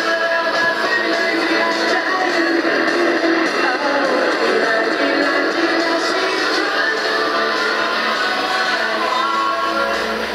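A small portable radio's loudspeaker playing music, the radio running with no batteries on DC power from a fan-driven miniature wind turbine.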